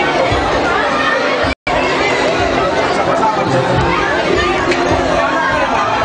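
Crowd chatter: many people talking and laughing at once. The sound cuts out completely for a moment about a second and a half in.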